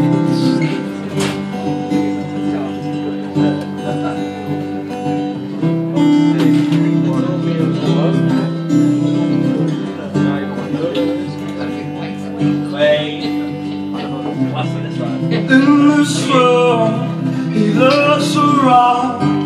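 Acoustic guitar strummed in steady chords, the opening of a song played live. A voice comes in over it near the end.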